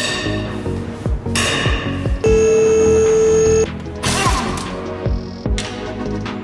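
Background music with a steady beat; about two seconds in, a cordless impact wrench runs for about a second and a half with a steady whine, loosening a wheel bolt on the front wheel.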